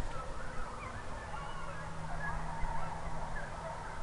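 A pack of hounds baying in the distance: many short, overlapping cries running on throughout.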